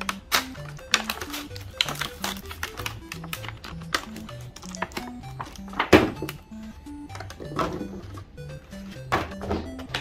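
Background music with a stepping bass line, over repeated clicks, crackles and knocks of plastic blister packs being opened and Nerf Vortex foam discs being handled.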